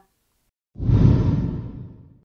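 Whoosh sound effect for a news segment transition. After a short silence, a deep swoosh starts suddenly about three-quarters of a second in and fades away over the next second and a half.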